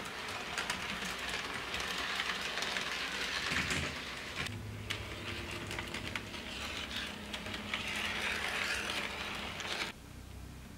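HO scale model train running on sectional track: a steady rattle of metal wheels with many small clicks over the rail joints. A low hum comes in about halfway.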